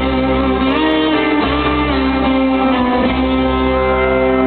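A live country band playing in an arena: guitars and fiddle over long held notes, with a few sliding notes.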